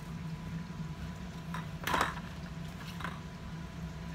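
Hollow plastic balls knocking and rubbing against a metal muffin tin as a baby handles them: a few soft taps, the clearest about halfway through.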